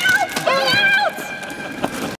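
A small group laughing hard, with high-pitched squeals and shrieks of laughter. The laughter is loudest for about the first second, then trails off.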